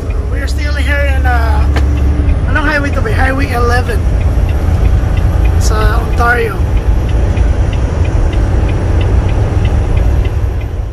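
Steady low rumble inside a Volvo semi-truck's cab at highway speed: the diesel engine and road noise, with a few short stretches of talking over it.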